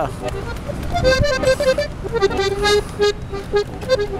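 Accordion playing a melody of short repeated notes, with a held note a little after two seconds in, over street traffic. A brief low thud about a second in.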